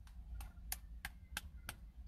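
Faint, evenly spaced clicks, about three a second, over a steady low hum.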